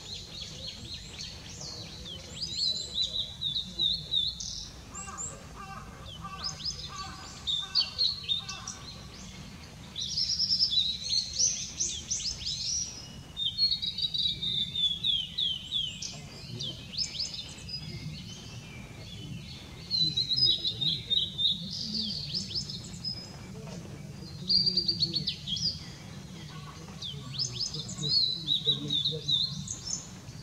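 Male Blue-and-white Flycatcher singing: phrases of high, sliding and fluttering whistles, repeated every few seconds, with short pauses between them. A steady low rumble of background noise runs underneath.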